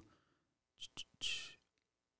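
A pause between words, near-silent except for two faint clicks just under a second in and then a short breath.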